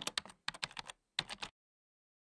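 Computer keyboard typing sound effect: a quick run of key clicks that stops about one and a half seconds in.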